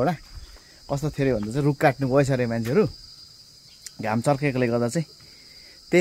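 Steady high-pitched insect chirring that runs without a break, with a man talking over it twice.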